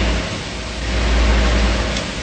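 Steady hiss with a low rumble underneath that eases off briefly and swells again; no distinct event stands out.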